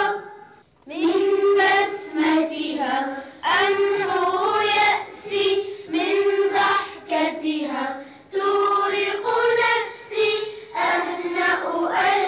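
A children's choir singing an Arabic song together, phrase by phrase. There is a brief pause just under a second in and short breaths between the lines.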